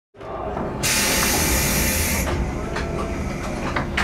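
A loud burst of compressed-air hiss, about a second and a half long, from a standing JR 115 series electric train, over a steady low rumble with a few clicks.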